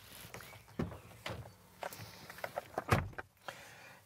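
Hyundai Ioniq 6 driver's door being opened and someone climbing into the seat, with faint clicks and rustles, then a firmer knock about three seconds in as the door shuts.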